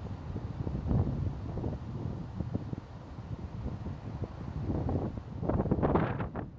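Wind buffeting a tablet's built-in microphone in uneven gusts, a low rushing noise that is strongest about a second in and again near the end.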